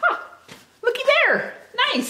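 A woman's high, wordless squeals of delight: three short cries, each sliding down in pitch.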